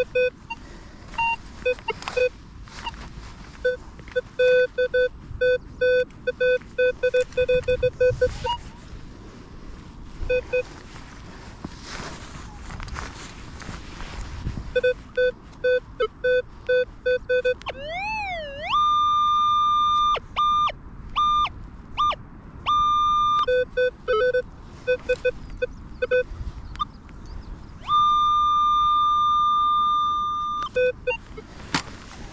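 Minelab Vanquish 540 metal detector giving target signals: bursts of short low beeps and several long, steady higher tones, one of them warbling up and down about two thirds of the way through.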